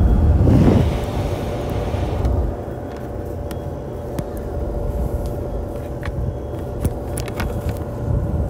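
A motor-driven machine running steadily with a low rumble and a constant hum. A rush of air hits the microphone in the first two seconds, and a few light clicks come later.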